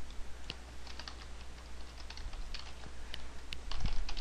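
Typing on a computer keyboard: a quick, irregular run of key clicks as a short web address is typed in.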